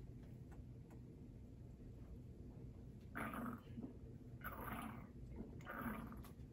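Close-miked gulps of a drink swallowed from a can: three swallows just over a second apart.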